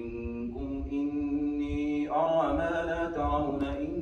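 A man's voice reciting the Quran aloud in the chanted, melodic style of prayer recitation, drawing out long steady notes and swelling louder about halfway through.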